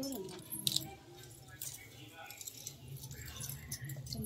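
Glass and metal bangles jingling and clinking on women's wrists as their hands move, a few short sharp clinks spread through the moment.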